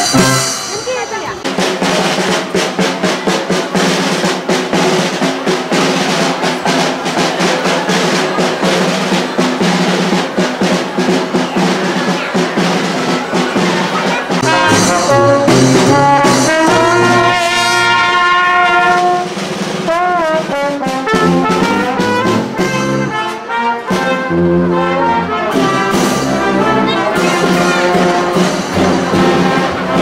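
Marching brass band of trumpets, trombones and low brass with a drum and cymbal, playing a tune. A steady drum beat drives roughly the first half, then the brass carries a clear held melody.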